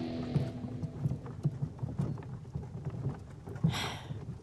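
Horse hooves clip-clopping, about three strikes a second, as a horse-drawn carriage travels, with a brief hiss near the end. Music fades out in the first half-second.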